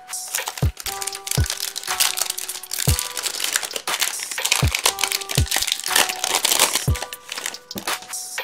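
Plastic wrapper of a 2022 Topps Series 1 baseball card pack crinkling as it is torn open by hand, over background music with a regular beat.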